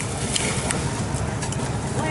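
Metal spoon stirring chopped chilies in a ceramic bowl, with a few light clicks of the spoon, over a steady background of street traffic noise.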